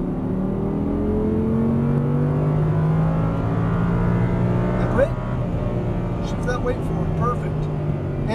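Audi R8's V10 engine at full throttle, heard from inside the cabin, its pitch rising steadily for the first few seconds as the car accelerates out of a corner. The note then levels off, with a brief sharp sound about five seconds in.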